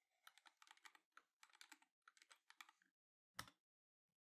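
Quiet typing on a computer keyboard: a quick run of keystrokes lasting about three seconds, then a single louder keystroke near the end.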